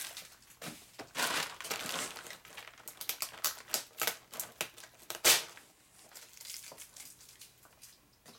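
Bubble wrap crinkling and rustling in irregular bursts as it is handled, with a sharp crackle about five seconds in.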